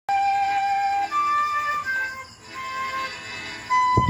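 Bamboo transverse flute playing a slow melody of single held notes, each lasting about half a second to a second, with a softer passage about halfway through.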